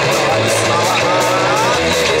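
Rock band playing live: a man sings over electric bass, electric guitar and drums, with regularly repeating cymbal strokes.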